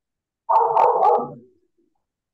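A dog barking, one loud outburst of about a second starting about half a second in, heard over a video call's audio.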